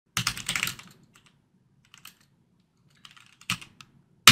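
Computer keyboard typing out a short command: a quick flurry of keystrokes in the first second, a few scattered keys, then another burst near the end with one louder key press.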